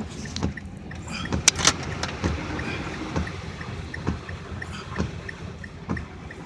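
A car creeping through floodwater, heard from inside the cabin: water swishing against the car, a thump about every second, and a faint quick ticking, about three a second.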